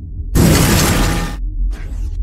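Cartoon sound effect for a robot appearing: a sudden loud burst of noise about a third of a second in that lasts about a second, then a shorter, weaker burst near the end, over a low steady drone.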